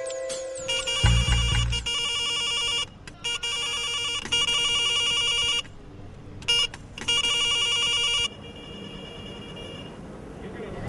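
An electronic phone ringtone trilling in repeated bursts, starting about two seconds in and stopping about eight seconds in. A deep bass thump comes just before it.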